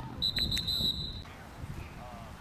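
Referee's whistle blown once, a single high steady blast of about a second, marking the play dead after the tackle.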